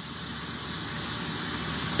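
A steady hiss of background noise, growing slightly louder across the pause.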